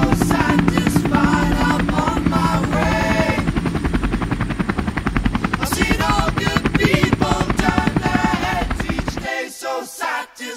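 Rapid, even beating of a multirotor drone's spinning propellers over a cappella vocal music. The rotor sound cuts off suddenly near the end while the singing carries on.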